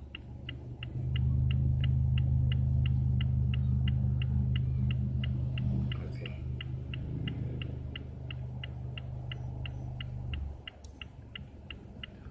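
Car turn-signal indicator ticking evenly, about three ticks a second. A loud low steady hum joins about a second in and cuts off suddenly near the end.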